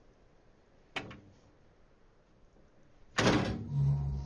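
Lid of a rooftop water tank being opened: a sharp click about a second in, then a loud clunk as the lid is heaved up near the end, followed by a low steady hum.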